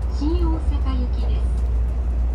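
Steady low hum of a Tokaido Shinkansen car's interior, with a woman's voice speaking in short phrases over it, typical of the train's automated onboard announcement.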